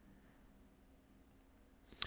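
Near silence: room tone with a faint steady low hum and a couple of faint clicks about a second and a half in.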